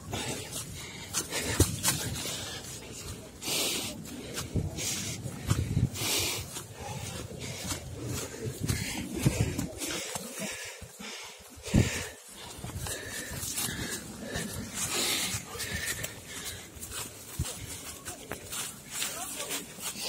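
Running footsteps crunching and rustling through dry fallen leaves on a steep forest trail, an irregular stream of short crunches, together with a runner's hard breathing.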